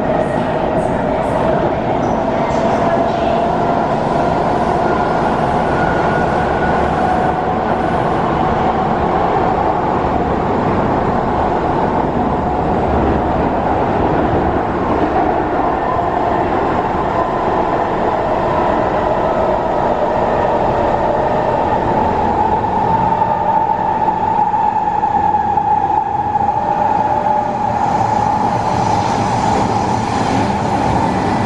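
Inside an SMRT C151 metro car under way in a tunnel: a steady rumble of wheels on rail, with a faint motor whine that drifts slowly up in pitch.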